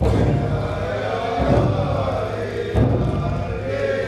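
A group of voices chanting a song together. Under the chant is a deep pulse that renews about every second and a half.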